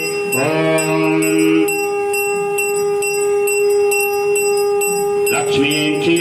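Brass puja hand bell (ghanta) rung steadily during the aarti lamp offering, struck about two to three times a second, with a continuous ringing tone. Near the start a voice briefly holds a long chanted note.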